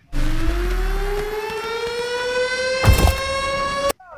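A siren-like sound effect: one tone rich in overtones that starts abruptly and climbs slowly and steadily in pitch for nearly four seconds, then cuts off. A deep thump lands about three seconds in.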